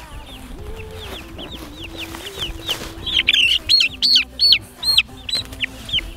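Young meat chicks peeping: a string of short, falling high-pitched peeps that come thicker and louder from about three seconds in.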